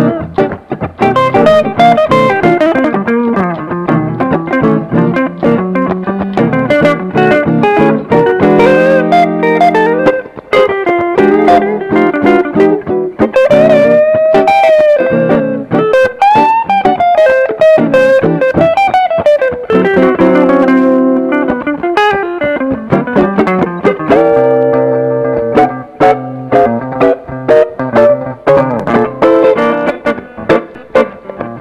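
Two electric guitars, one a Fender Stratocaster, playing a blues duet: lead lines with string bends over chords, with several stretches of held, ringing chords.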